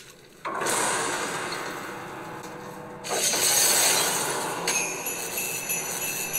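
Sound effects from the TV episode's soundtrack: a shimmering, glassy rush of noise that starts about half a second in and swells louder around the middle, with steady high ringing tones joining near the end.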